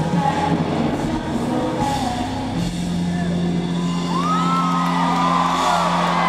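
Live stadium concert sound over a PA: the song's backing music playing, with a low note held from about halfway. From about four seconds in, the crowd cheers and whoops over it.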